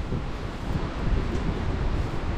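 Wind buffeting the camera microphone: an uneven, gusty low rumble with a fainter hiss over it.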